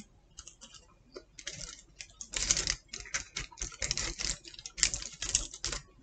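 Close-up chewing of a bite of pizza: irregular crisp crunching clicks of the crust in the mouth, starting after a quiet second or so.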